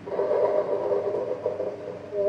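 A loud, whistle-like chord of several steady tones with a breathy edge, starting suddenly and dropping away near the end.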